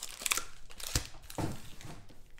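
Foil-wrapped trading-card packs crinkling and rustling as a handful is lifted out of a cardboard hobby box and stacked on the table, with a few brief rustles and a soft knock about a second in.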